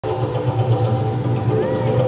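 Arena background sound: a steady low hum under music playing over the public-address system, with faint voices.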